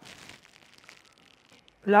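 Faint, brief rustling as sticky pre-fermented dough (a biga) slides out of a glass bowl into a stainless-steel stand-mixer bowl.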